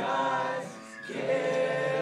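A group of men singing together in harmony: one sung phrase that dips about a second in, then a second held note.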